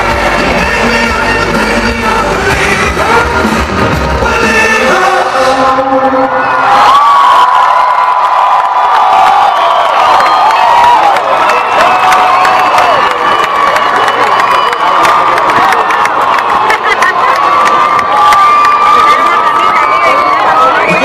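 Live rock band playing the last bars of a song over a loud concert PA, stopping about five seconds in. Then a large crowd cheers, shouts and screams.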